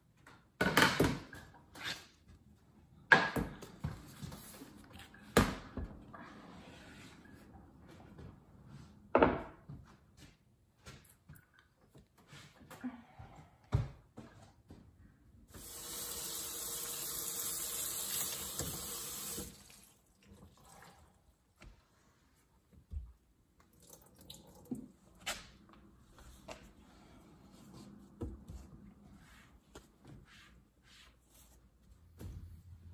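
A few sharp knocks and clunks of handling. Then a kitchen faucet's pull-down sprayer runs for about four seconds, spraying water onto a silicone-lined loaf of soap in a stainless steel sink, followed by small clicks and handling sounds.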